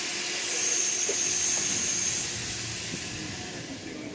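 Steam hissing from a standing Chinese QJ 2-10-2 steam locomotive (Iowa Interstate No. 6988), slowly dying away, with a thin high whine running through it from about half a second to two seconds in.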